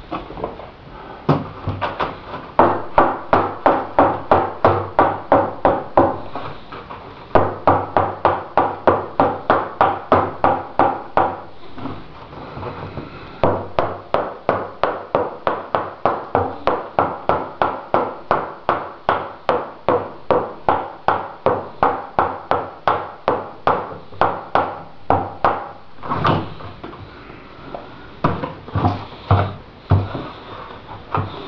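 Rubber mallet rapping on the mold of a fiberglass model-airplane fuselage to knock free areas that aren't releasing. The strikes come in quick, even runs of about three a second, with two short pauses and a few scattered blows near the end.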